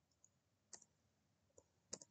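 A few faint, sharp clicks from a computer keyboard and mouse as a formula is edited, about five in two seconds, the loudest near the end.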